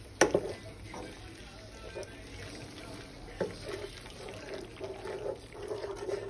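Wooden spoon stirring penne in sauce around a skillet, scraping the pan, with a sharp knock of spoon against pan just after the start and another at about three and a half seconds.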